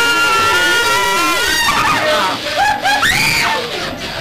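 People screaming: one long held scream, then a burst of short shrieks about three seconds in.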